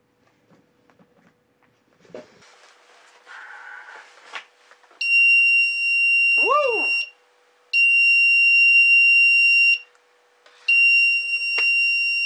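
Arduino-driven buzzer sounding three times, each a steady high-pitched beep of about two seconds with short gaps between. It is the proximity alarm going off because an object has come within 10 cm of the ultrasonic sensor.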